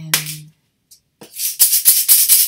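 A short snap at the start as a plastic egg is closed. Then, just over a second in, a plastic egg filled with dried green split peas is shaken fast like a maraca: a loud, dense rattle with a nice sharp sound.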